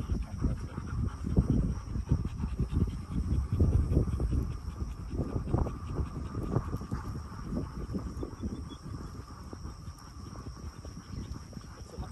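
A dog panting hard and fast close to the microphone, a rapid uneven run of breaths that eases off in the last few seconds.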